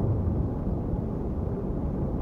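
Wind rushing over the microphone of a bike-mounted camera as the bicycle rolls along, a steady low rumbling noise with no clear tone.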